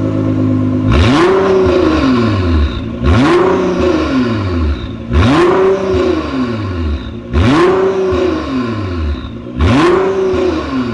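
2017 Nissan GT-R R35's 3.8-litre twin-turbo V6 idling, then revved in five quick blips about two seconds apart, each rising sharply and falling back. It breathes through a decat Fi Exhaust race-version system with its exhaust valves open.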